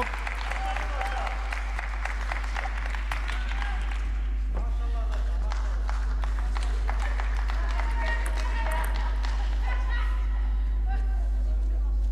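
Spectators clapping and applauding after a table tennis point, densest in the first few seconds, then indistinct voices in the crowd. A steady low electrical hum runs underneath.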